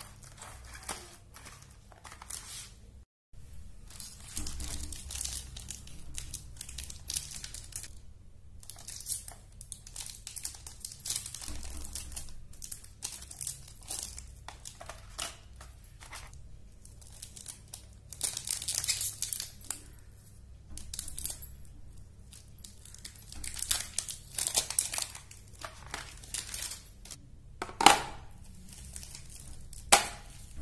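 Crinkly plastic chocolate-bar wrappers and a clear plastic packaging tray rustling and crackling as they are handled, in irregular bursts. One sharp snap, the loudest sound, comes near the end.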